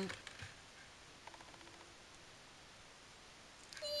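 Near silence: room tone, with a faint click early on and a short run of soft, quick ticks a little after a second in.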